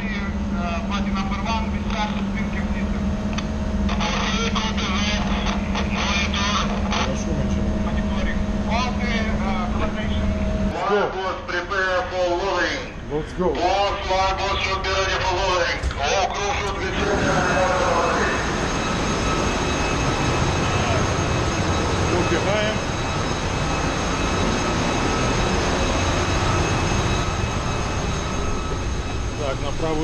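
Steady machinery hum of a ship's engine control room, with two held tones under it. From about 17 seconds a fuller, rougher din of running engine-room machinery takes over, a dense even roar laced with several steady whines.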